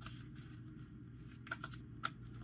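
Oracle cards being handled and shuffled: soft rustling with a couple of light snaps about one and a half seconds in, over a low steady hum.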